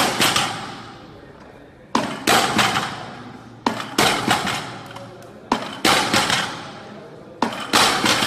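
Barbell with metal-hubbed plates clanking against the underside of a bench at each rep of a prone bench row. There are five reps about two seconds apart, each a sharp double clank followed by ringing.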